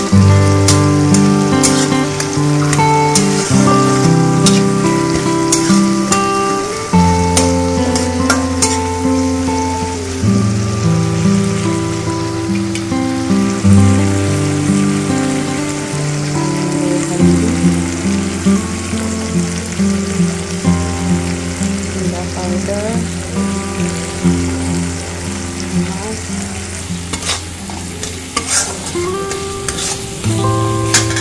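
Tomato-and-spice masala sizzling in hot oil in a kadai, with a metal spatula scraping and clicking against the pan, under background music.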